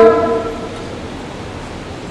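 A man's voice holding one drawn-out, steady vowel that fades out within the first second, followed by low, steady room noise.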